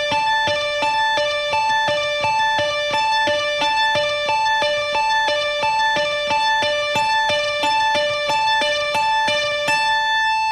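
Electric guitar playing a slow, even two-note inside-picking exercise. Picked notes alternate between the 15th fret of the B string (D) and the 17th fret of the high E string (A), up, down, up, down, at about four notes a second.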